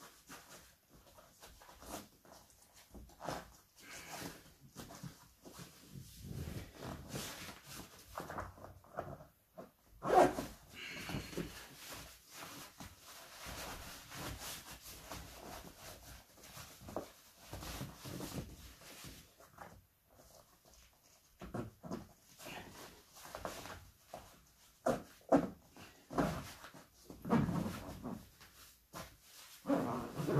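Scarpa 8,000-metre double mountaineering boots being pulled on and done up: fabric rustling, scraping and knocks as the liner, shell and built-in gaiter are tugged into place and the laces and fastenings pulled tight. The noise comes in bursts with short pauses, and the sharpest knock falls about ten seconds in.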